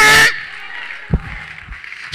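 A man's voice through a microphone holds one steady, sustained note at the end of a chanted sermon phrase, cutting off shortly after the start. This is followed by a pause of faint room sound, broken by a single low thump about a second in.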